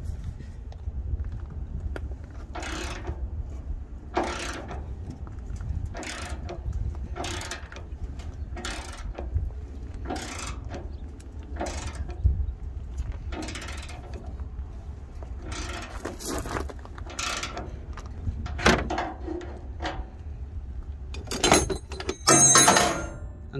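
Long socket ratchet backing out a seized DOC outlet temperature sensor from a Freightliner Cascadia's exhaust aftertreatment housing, the sensor now broken loose. Short bursts of ratchet pawl clicking come roughly once a second as the handle is swung back and forth, with a louder metal clatter near the end.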